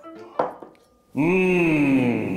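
A short clink of a steel saucepan on a glass cooktop, then, from about a second in, a man's loud, drawn-out 'hmmm' of relish, slowly falling in pitch.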